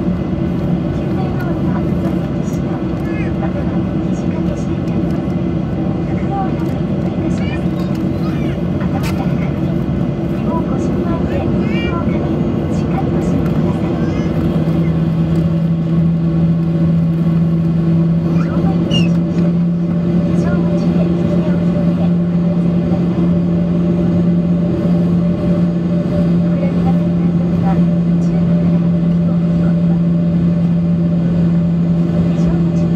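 Jet airliner's engines heard from inside the cabin while on the ground before takeoff: a steady, loud hum with several fixed low tones. About halfway through the lowest tone grows stronger and the sound gets slightly louder as the engines are brought up for taxi.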